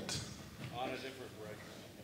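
Faint, distant speech, a voice or two answering from the audience, over the low room tone of a large hall.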